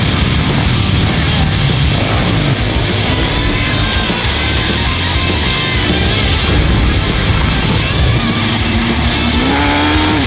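Loud rock music with flat-track motorcycle engines revving underneath as the bikes race on a dirt oval.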